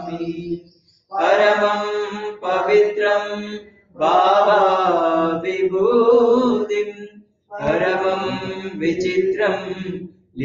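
A voice chanting a devotional Sanskrit mantra in three phrases of about three seconds each, with brief pauses between them.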